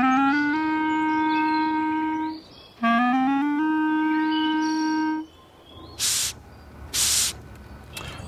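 Clarinet playing two phrases, each a quick rising run of notes that settles on a long held note. Two short airy hisses about a second apart follow, used to imitate a cockroach blowing air through its spiracles.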